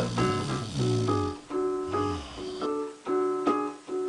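Piano patch on a Korg M50 synthesizer keyboard played by hand: a repeating pattern of struck chords, with low bass notes under them for the first second and a half, then the higher chords alone.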